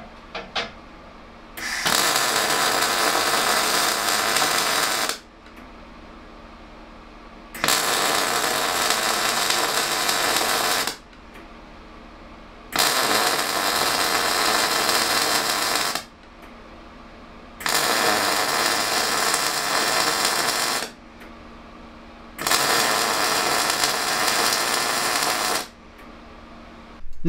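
DECAPOWER XTRAMIG 200SYN MIG welder in its timed spot mode, laying five welds one after another. Each arc sizzles steadily for about three seconds and cuts off abruptly as the timer ends, with pauses of about two seconds between welds. It runs 0.8 mm wire at about 154 amps and 19.1 volts.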